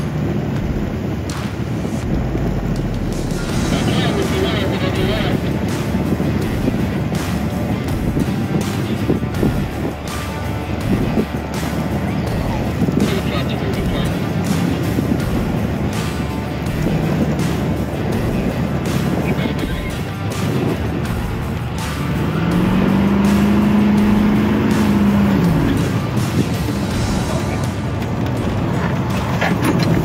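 Pickup truck driving with a side window open: engine and road noise with wind. The engine note climbs about three-quarters through, holds for a few seconds, then drops. Background music plays over it.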